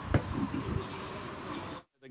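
Steady outdoor background noise with faint, indistinct voices and one sharp knock just after the start. The sound cuts out to silence shortly before the end.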